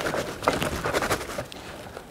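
A stiff burlap hive cover caked with hardened propolis being crumpled and rubbed between the hands: a dense crackling and rustling as the brittle propolis cracks and breaks off the cloth, easing off near the end.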